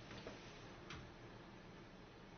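Near silence in a quiet room, with a few faint clicks from a laptop being operated: once about a quarter second in and again about a second in.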